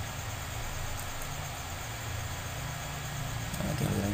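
Steady background noise: an even hiss over a low rumble, with no distinct events.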